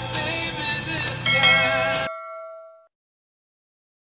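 A song with singing plays and is cut off about a second in by a click and a bell ding from a subscribe-button animation. The ding rings with several tones and fades out over about a second and a half.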